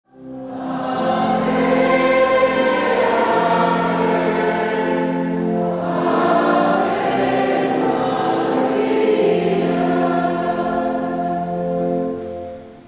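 A choir singing a slow hymn in long held notes, fading in over the first second.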